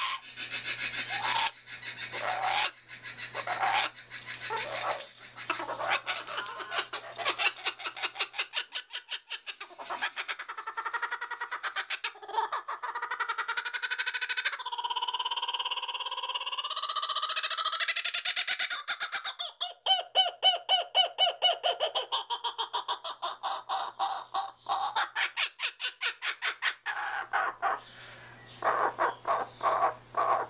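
Laughing kookaburra giving its laughing call: rapid, rolling chuckles with rising and falling notes in the middle, building to the loudest and fastest run of repeated notes about two-thirds of the way through, then a fresh burst near the end.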